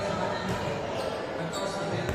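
Volleyball being hit during a rally: a couple of sharp ball contacts about half a second apart, echoing in a large indoor sports hall.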